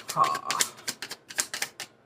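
A deck of tarot cards being shuffled by hand: a quick run of card snaps, about six a second, that stops near the end.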